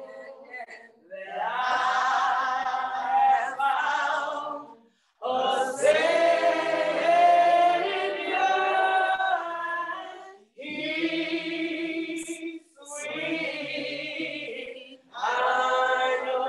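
Unaccompanied singing, a woman's voice leading, in several long held phrases separated by short breaks.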